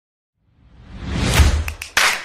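A whoosh sound effect from an intro sequence: it rises out of silence over about a second with a deep rumble beneath, then fades, followed by two short ticks near the end.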